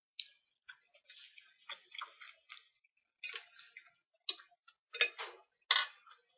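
Close-miked chewing of crisp, crunchy food: a run of irregular crackles and crunches, loudest about five to six seconds in.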